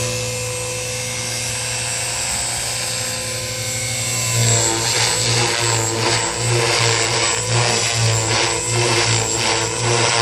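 Electric 450-size JR Forza RC helicopter in flight: a steady motor and rotor whine. From about halfway in, its sound pulses about twice a second.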